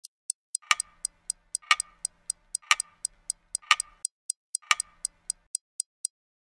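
Clock ticking sound effect: quick light ticks about four a second, with a louder tick once a second. The ticking stops shortly before the end.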